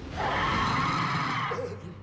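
A loud screeching, rushing sound effect from an anime fight scene, swelling in just after the start, holding for over a second and fading away near the end.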